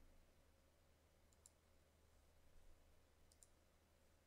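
Near silence: faint room tone with a few faint computer mouse clicks, one about one and a half seconds in and two close together a little past three seconds.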